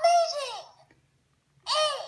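Fisher-Price Laugh & Learn toy game controller's electronic voice giggling: two short laughs with a rise-and-fall pitch, one at the start and one near the end.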